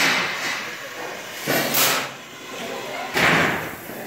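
Three loud slams or bangs of construction work on a building site, about a second and a half apart, with voices faintly in the background.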